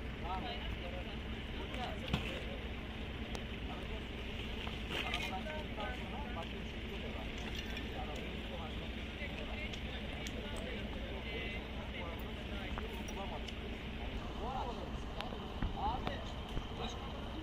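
Indistinct voices of several people talking in the background over a steady low rumble. A brief sharp click comes about two seconds in.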